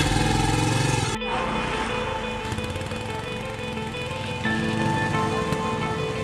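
Motorcycle engine running, loudest in the first second, with background music of sustained tones over it.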